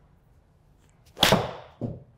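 A Titleist T150 iron striking a golf ball off a turf hitting mat about a second in: one sharp, loud crack that dies away quickly, followed by a softer, duller thud. The strike is a slight mishit, which the players wonder was low on the toe.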